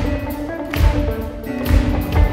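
Live band music over a concert-hall PA: a steady drum-kit beat under sustained bass and keyboard parts.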